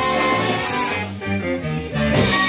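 Live band of violin, electric guitar, bass guitar and drum kit playing world music. The texture thins in the second half to mostly bass notes before the full band comes back in at the end.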